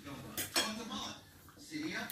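Metal cutlery clinking against a plate or bowl while eating, with two sharp clinks about half a second in.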